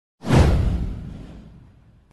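Whoosh sound effect for an animated title intro: a single swish with a deep low rumble under it. It rises sharply about a quarter-second in, then fades away over about a second and a half.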